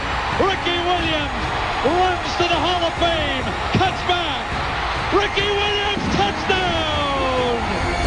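A stadium crowd cheering under a football broadcast announcer's excited shouting, with a long falling call near the end.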